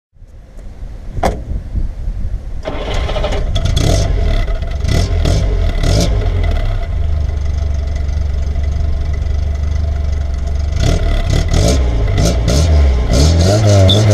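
Exhaust of an early FSO Polonez four-cylinder petrol engine, heard at the tailpipe. The engine is cranked and catches about two and a half seconds in, then runs unevenly before settling to a steady idle. Near the end it is blipped and revved, its pitch rising.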